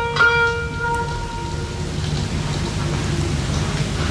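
Kanun taksim pausing: one plucked note rings and fades over the first couple of seconds. A steady hiss and crackle of old record surface noise fills the silence that follows.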